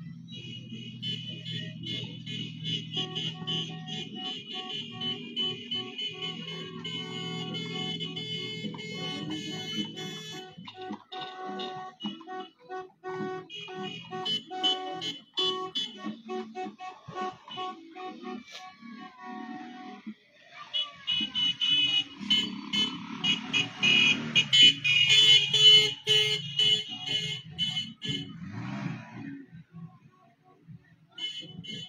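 Music with a steady beat playing; it drops out briefly about twenty seconds in and comes back louder.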